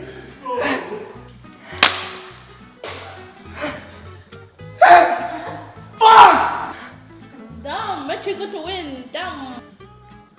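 Background music with a steady bass beat, over which a man lets out loud wordless cries and groans in pain from the burn of an extremely hot chip; a sharp slap sounds about two seconds in.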